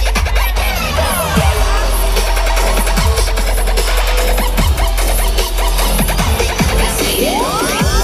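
Loud, bass-heavy dubstep-style electronic dance music from a DJ set playing over a festival sound system, with repeated falling pitch glides and a rising sweep near the end.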